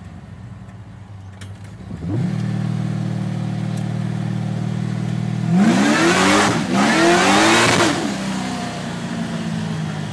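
Supercharged Holden 308 V8, heard from inside the cab. It runs quietly at first, and about two seconds in the engine note picks up and holds steady. Past the middle come two hard accelerations, each rising in pitch and split by a brief dip, before it settles back to a steady cruise.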